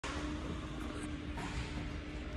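Faint background music over a steady hum and hiss of room noise.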